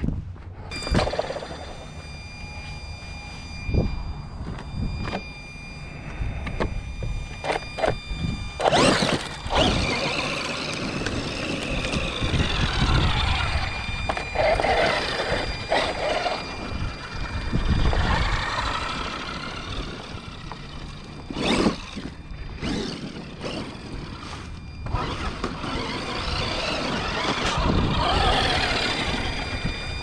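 Traxxas X-Maxx electric RC monster truck being driven, its motor whining and rising and falling with throttle over the noise of the running gear and tyres on the ground. Several sharp thumps and knocks come through, the loudest about 9 and 22 seconds in.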